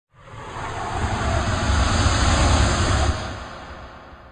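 A produced whoosh of noise with a deep rumble underneath, swelling up over the first second and fading away after about three seconds: a logo intro sound effect.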